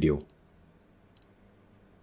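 Faint computer mouse clicks: a couple just after the start and a quick pair about a second in.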